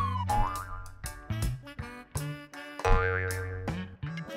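Light background music with a steady, bouncy beat over a bass line, with a short sliding note about half a second in.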